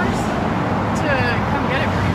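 A person speaking over a steady low rumble of road traffic.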